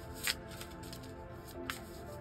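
A deck of tarot cards being shuffled by hand, with a few brief card strokes near the start and again near the end, under steady background music.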